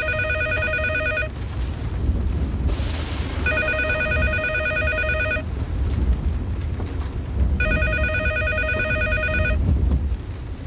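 Corded landline telephone ringing, unanswered, in rings about two seconds long every four seconds, three times. A steady low rumble runs underneath.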